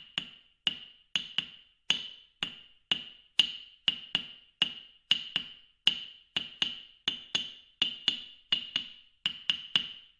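Wooden percussion struck in a steady beat of about two strikes a second, some strokes doubled, each a sharp clack with a short ringing decay.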